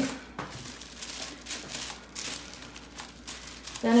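Tissue paper rustling softly and irregularly as it is folded over by hand.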